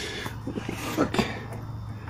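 A few faint clicks and taps as a metal clutch line is handled and fitted toward the slave cylinder, over a low steady hum.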